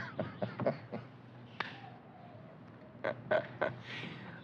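A man chuckling in short breathy bursts that die away about a second in, then another brief chuckle near the end.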